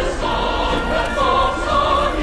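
Music with a choir of many voices singing, loud and continuous.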